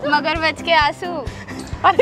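A high, whining, whimper-like voice that slides up and down in pitch, over background music with a steady beat.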